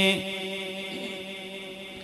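A man's amplified chanted note, held long on one pitch, breaks off at the very start and its echo dies away, leaving a quieter lull before the next line.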